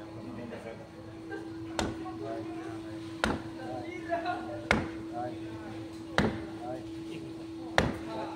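A mallet striking the spine of a large knife five times, about a second and a half apart, driving the blade through the bone of a giant grouper's carcass.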